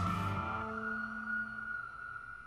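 Police siren wail that has risen to a single held high pitch and slowly fades, over sustained music notes dying away one after another.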